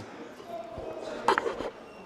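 Quiet pause in a large hall: faint distant voices with a few soft low knocks.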